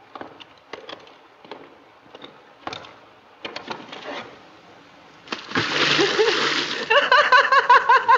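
A man dropping off a rowing boat into shallow river water: a few faint knocks, then a loud splash a little after five seconds in. Laughter in quick repeated bursts follows near the end.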